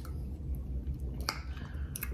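Someone sipping wine from a glass: a few small wet clicks from the lips and mouth over a low steady hum.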